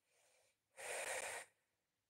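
A woman breathing close to a phone microphone: a faint breath in, then a louder breath out lasting under a second.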